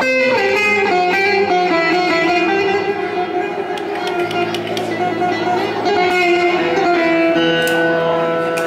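Live, amplified Turkish folk dance music: a single melody instrument plays held notes with slides between them, and a low bass line fills in about four seconds in.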